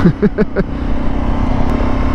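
650cc single-cylinder motorcycle engine running steadily under way, with wind and road noise, picked up by a lavalier mic inside the rider's helmet; the engine note climbs a little near the end.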